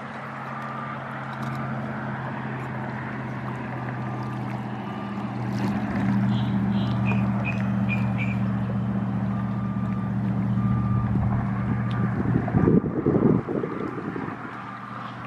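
A distant motor's steady, even drone swells over several seconds and holds. A run of short high chirps comes about six to eight seconds in, and a brief loud buffeting rumble comes near the end.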